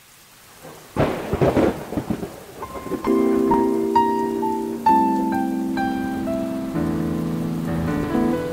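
Rain and a thunderclap about a second in, then held keyboard chords with a line of higher single notes entering around three seconds in: the intro of a song.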